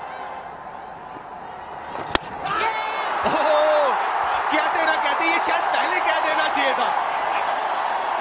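Cricket stadium crowd cheering a wicket. The cheer swells suddenly a little over two seconds in, right after a sharp click, and stays loud, with voices running through it.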